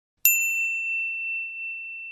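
A single bright electronic bell ding, the notification-bell sound effect of an animated subscribe button, starting about a quarter second in and ringing on as it slowly fades away.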